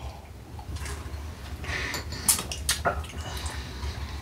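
Quiet sipping and slurping of wine from glasses, with a few short wet clicks about two and a half seconds in.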